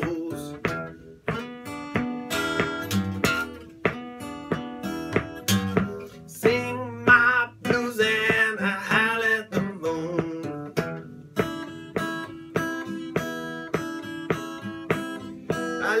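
Steel-string Sierra acoustic guitar strummed and picked in a blues rhythm, with a short wordless vocal line about halfway through.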